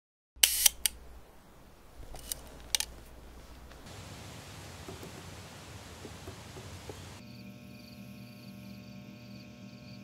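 Camera mechanism clicks: a few sharp clicks near the start and another cluster about two to three seconds in. They are followed by a faint steady hiss, and from about seven seconds in a low steady hum with several tones.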